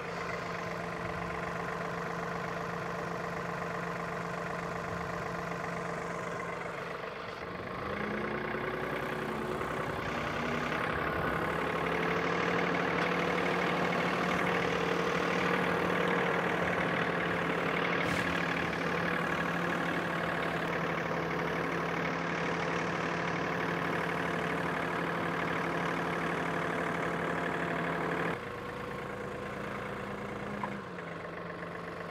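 A John Deere compact tractor's diesel engine running steadily. It gets louder from about eight seconds in, while the tractor is driven, and drops back shortly before the end.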